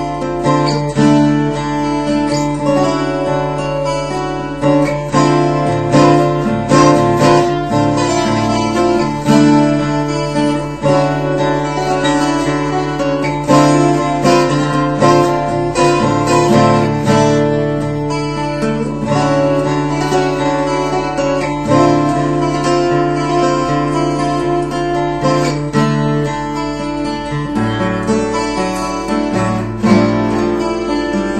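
Unplugged 12-string acoustic guitar, flatpicked in arpeggiated chords that ring over open strings in D. A low bass note sustains under the picking and changes in the last couple of seconds.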